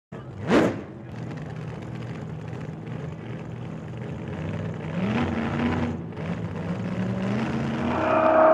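A short whoosh, then a car engine running steadily with road noise, its pitch rising about five seconds in.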